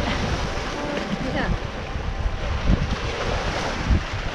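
Small lake waves washing and breaking against a rocky shore, with wind buffeting the microphone in gusts.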